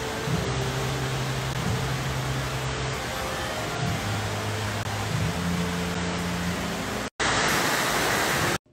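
Steady rush of running water at a koi pond, with low hum-like tones under it that shift in pitch every second or two. A little after seven seconds the sound breaks off for an instant, then the louder, brighter splashing rush of fountain jets comes in.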